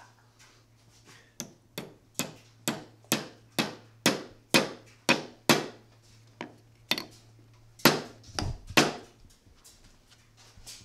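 A hammer driving a wedge into the end of a curly teak handle to lock a hand-forged Japanese hammer head onto it. A steady run of about ten sharp taps, roughly two a second, then a few spaced, heavier blows near the end.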